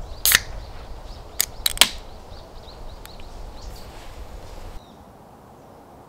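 A drinks can's ring-pull cracking open with a sharp pop about a third of a second in, followed by a few quick clicks and taps about a second later. Small birds chirp faintly in the background.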